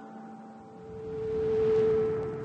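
Background music of sustained drone tones, like a tuning fork or singing bowl. A low tone swells louder from about a second in, with a low rumble beneath it.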